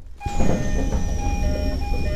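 Machinery of a stationary electric commuter train, with a low rumble starting suddenly about a quarter second in. Steady humming tones and a high whine that slowly falls in pitch run over it.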